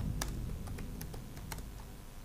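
Faint room tone: a low hum with a few light, irregular clicks.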